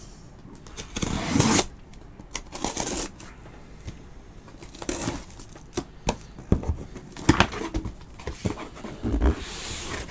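A cardboard shipping case being opened by hand: irregular bursts of cardboard and packing tape scraping and rustling, with a few sharp knocks as the box is handled.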